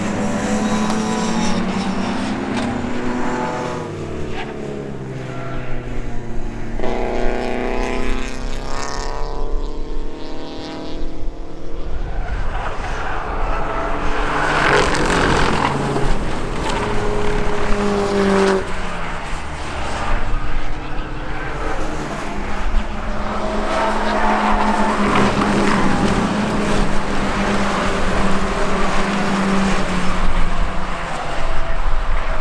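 Racing car engines at high revs, one car after another, rising and falling in pitch as they accelerate, lift off and go by. There is a rush of noise about halfway through.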